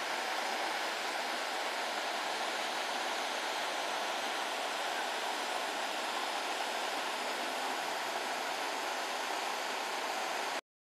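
A stream rushing steadily over rocks, an even hiss of running water.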